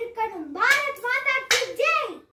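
A young girl's high voice calling out loudly in drawn-out syllables, with a single sharp knock about one and a half seconds in.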